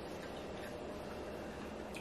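Quiet chewing of pizza, with faint small mouth clicks over low room tone.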